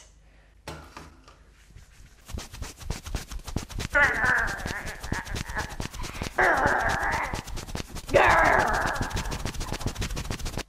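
Fast, harsh scratching strokes of toilet paper rubbed hard and repeatedly, many strokes a second, starting about two seconds in. The rubbing comes in three louder stretches.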